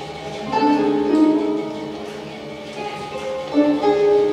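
Three guzhengs (Chinese plucked zithers) played together in free improvisation: overlapping plucked notes ring on and fade, with fresh notes struck about half a second in, about a second in and near the end.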